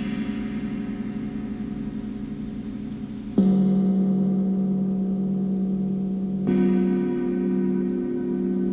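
Background music of deep struck gong tones. A tone rings on and fades, then a new, louder strike comes about three and a half seconds in and another about three seconds later, each ringing long with a slow wavering beat.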